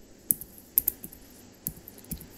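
Computer keyboard typing a short word: a handful of separate, light keystrokes spread over about two seconds.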